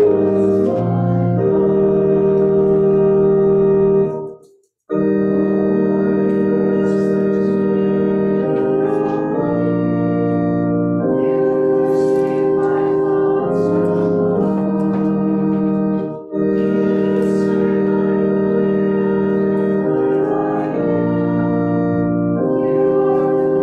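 Church organ playing the psalm tune in sustained chords, breaking off between phrases about four and a half seconds in and again briefly about sixteen seconds in.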